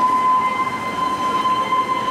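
A single long, steady high tone that slides up slightly as it begins, then holds one pitch.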